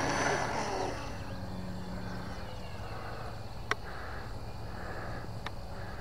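Electric motor and propeller of an FMS P-39 Airacobra RC model plane at takeoff power, the whine rising in pitch in the first second and then fading as the plane climbs away. A sharp click comes about midway.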